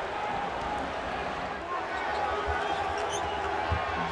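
Steady arena crowd noise with a basketball being dribbled on a hardwood court; a couple of dull low bounces stand out near the end.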